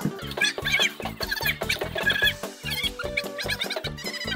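Upbeat background music with a quick, steady beat and short, high chirping figures repeating over it.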